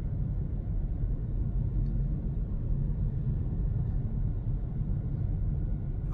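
Steady low rumble of road and tyre noise heard inside the cabin of a Hyundai Kona Electric cruising at about 80 km/h.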